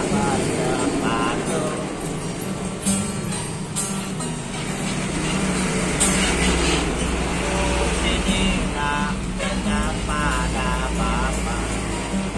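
Nylon-string classical guitar fingerpicked through an instrumental passage between sung lines. A steady low rumble of road traffic comes in about halfway through and stays under the guitar.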